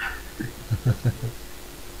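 A person chuckling: a run of about five short, quick laughs in the first second and a half, over a faint steady low hum.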